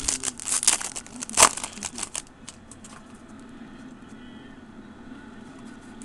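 Foil baseball card pack being torn open by hand: a run of crinkling for about two seconds with one sharp rip about a second and a half in, then only faint rustles and clicks of the wrapper and cards being handled.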